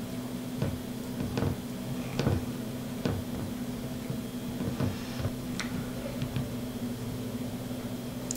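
Small metal nuts being fitted by hand onto screws through a carbon-fibre drone frame: irregular light clicks and taps of metal against carbon fibre and the screw ends. A faint steady hum runs underneath.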